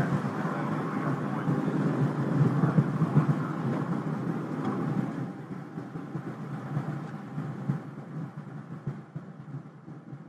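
Solid rocket booster noise picked up by the booster-mounted camera: a dense, rough rumble that fades gradually through the second half as the boosters burn out and separate.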